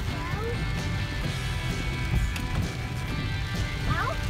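Steady low rumble of a vehicle driving a wet dirt trail, heard from inside the cabin, with music playing over it.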